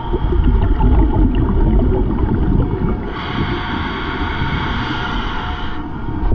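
Loud underwater rumble and rush of moving water. About three seconds in, a brighter hiss joins it.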